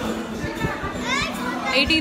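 Speech: a young woman talking close to a phone's microphone, with a rising, excited voice about a second in.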